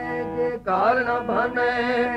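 Harmonium holding sustained chord notes. About two-thirds of a second in, a singer enters over it with a long, wavering, ornamented vocal line in Sikh kirtan style.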